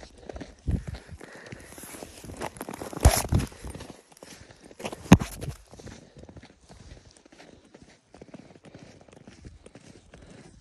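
Footsteps crunching on packed snow, a steady run of short steps, with two louder knocks about three and five seconds in.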